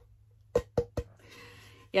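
Three quick knocks in close succession from the unfinished wooden plate being handled, followed by a faint rustle.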